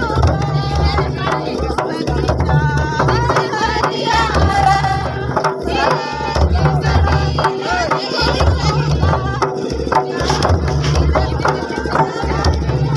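Folk drumming on two-headed barrel drums of the mandar type, beaten by hand in a steady, driving rhythm, with voices singing along above the drums.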